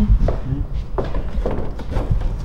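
A few light knocks and handling sounds as a prototype front spoiler part is handled against a pickup's front bumper, over a steady low rumble.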